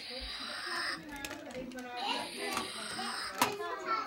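Electronic sound effect from a battery-powered action-figure toy, set off by pressing its button: a hissy whoosh with a high whine, a short break, then a second one. A sharp click follows about three and a half seconds in.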